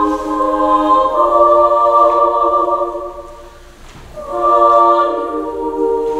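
Mixed chamber choir singing long, sustained chords. The chord shifts about a second in, the singing fades away to a short breath-pause a little past halfway, then a new chord swells in.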